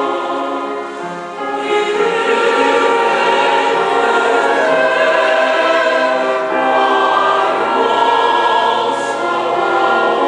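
Mixed choir of men's and women's voices singing a hymn in sustained chords, briefly softer about a second in, then swelling fuller.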